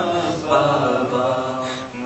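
A solo male voice chanting an Urdu noha (lament) into a microphone, drawing out one long held note at the end of a line, which tails off near the end.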